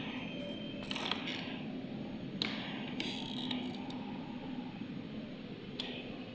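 A few separate clicks and scrapes of equipment being handled, over a steady low hum.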